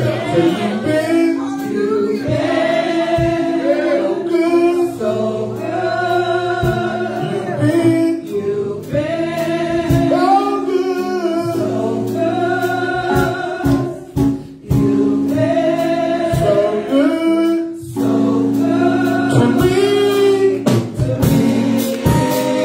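Women singing a gospel worship song into microphones, in phrases a few seconds long with long held notes.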